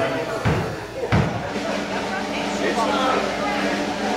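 Indistinct talking in a room, with two dull thumps about half a second and a second in, over a steady low hum.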